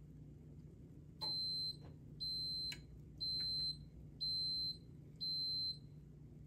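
An electronic beeper sounding five high-pitched beeps, each about half a second long and spaced one a second, starting about a second in. A few light clicks of a table knife against a ceramic plate come among the first beeps.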